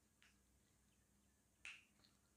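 Near silence: faint room tone with two brief soft clicks, the second, about 1.7 s in, the louder.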